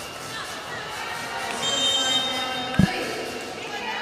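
Arena crowd murmur with a short, high referee's whistle a little before two seconds in, then a single thump of the volleyball a little before three seconds.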